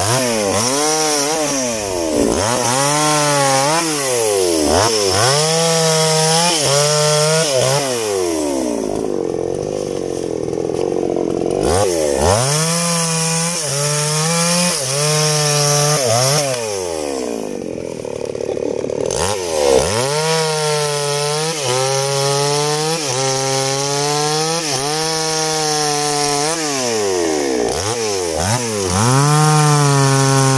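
A two-stroke chainsaw cuts through longan wood. It is throttled up to full revs and drops back again many times, about once a second. In two stretches, about a third of the way in and again past the middle, it runs lower and steadier for a few seconds.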